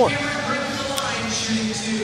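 Basketball arena crowd murmur under a broadcast, with a commentator's voice trailing off at the start and a single sharp knock about a second in.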